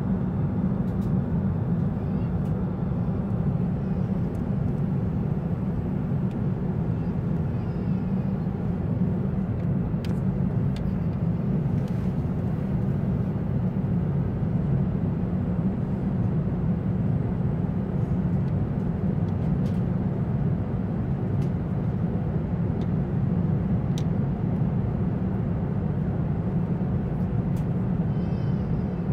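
Steady low rumble of a Boeing 747-400's cabin in flight, engine and airflow noise heard from inside the cabin, with the aircraft on low approach over water. A few faint ticks sound now and then.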